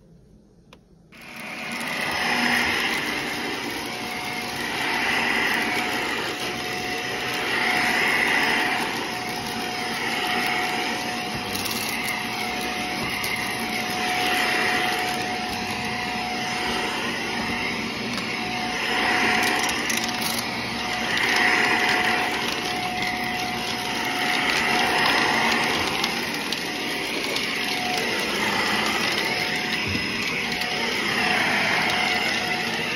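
Bagless upright vacuum cleaner starting about a second in and then running on carpet, with a steady motor whine. Its sound swells and eases every two to three seconds as it is pushed back and forth.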